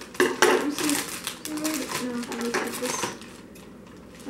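Metal scissors snipping at a plastic bag, with sharp clicks in the first half second and crinkling plastic. A child's wordless voice sounds briefly in the middle.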